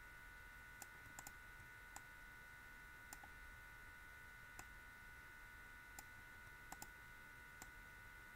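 Faint computer mouse clicks, about ten scattered irregularly and some in quick pairs, over a steady faint high-pitched electrical hum.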